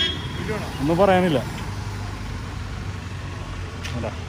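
Street traffic: a motor vehicle engine giving a steady low hum, with a short burst of a man's voice about a second in.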